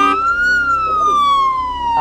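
Game-show sound effect signalling that time is up and the contestant has lost: a single pitched tone that climbs for the first half second, then glides slowly and steadily downward.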